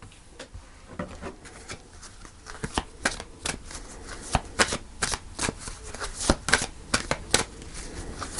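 A deck of cards being shuffled by hand: a run of quick card clicks and flicks, sparse at first and busier from about two and a half seconds in.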